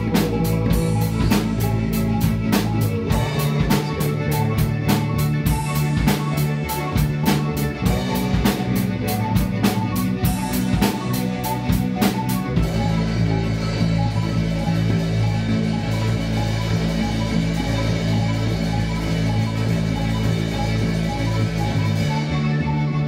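Live instrumental rock from a small band: electric bass, Nord keyboard and drum kit playing together. Just past halfway the drums drop out, leaving the bass and a repeating keyboard figure.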